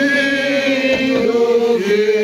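A group of people singing a hymn together, several voices overlapping on held notes.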